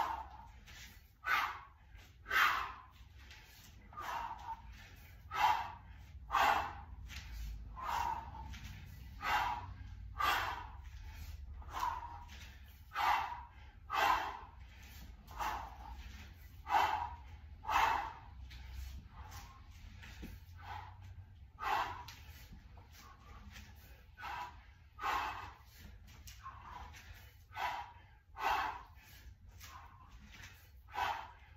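A man's sharp, forceful breaths through nose and mouth, about one a second in a steady rhythm, paced to the reps of a continuous kettlebell half snatch set.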